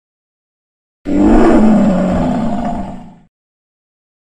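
A lion's roar sound effect: one long, loud roar starting about a second in and fading out after about two seconds.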